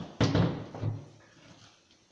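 A heavy power tool being handled and set down on a table: a sudden clunk about a quarter second in, then a smaller knock.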